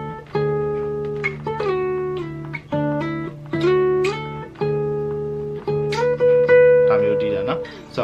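Acoustic guitar played fingerstyle in D: a melody of plucked notes, some sliding up in pitch, over a held low bass note. The phrase repeats about every one and a half seconds and ends on a long held note near the end.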